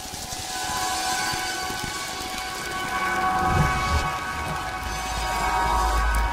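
A steady rain-like hiss under a held chord of steady tones, with a low rumble that swells in from about halfway through, as in a rain-and-thunder effect in a broadcast spot.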